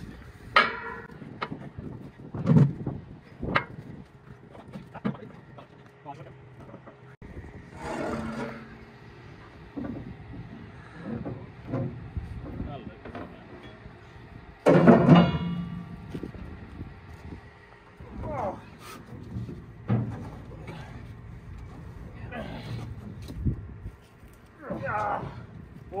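Irregular metal knocks and clanks from work on a Centurion tank's steel rear deck, with a louder stretch about halfway through.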